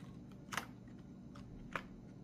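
Wallet being handled as fingers open its inner compartments: three faint short clicks and rustles over two seconds, the first about half a second in.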